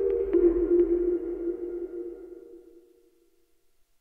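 Electronic outro sting: a low, sustained synth tone with a few sharp ticks near the start, fading out over about three seconds.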